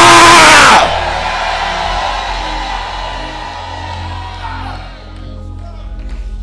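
A man's loud, falling shout into a microphone ends within the first second, followed by a congregation calling out over music holding long sustained chords, the whole gradually fading.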